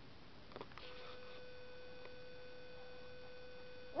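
A faint, steady electronic tone with a few higher overtones starts about a second in, after a few light clicks, and holds at one pitch.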